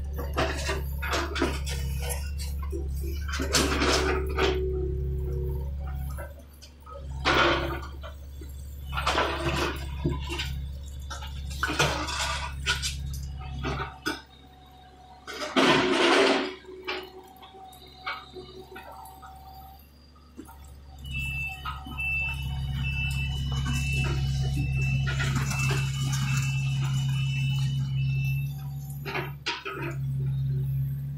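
John Deere 50D compact excavator's diesel engine running, with several loud crashes and scrapes of the bucket working broken concrete and rock in the first half, the loudest about halfway through. The engine then runs louder, with an electronic alarm beeping about one and a half times a second for several seconds.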